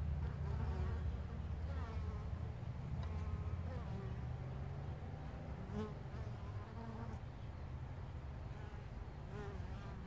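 Carniolan honey bees buzzing as they fly in and out of the hive entrance close to the microphone; the low, steady hum is louder in the first half and grows fainter after about five seconds.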